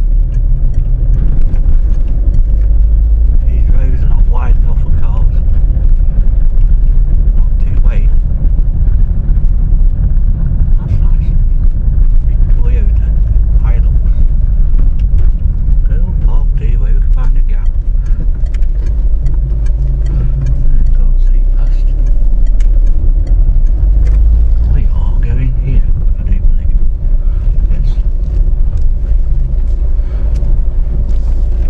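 Inside a moving car: a loud, steady low rumble of engine and tyre noise as the car is driven slowly along streets.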